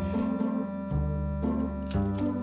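Instrumental background music with held notes that change about a second in.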